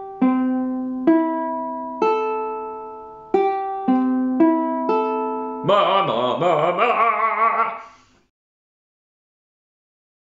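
Soprano ukulele open strings plucked one at a time, G, C, E and A, each note ringing about a second: a tuning check, played through about twice. Then a man sings a short wavering phrase for about two seconds, and the sound cuts to silence for the last two seconds.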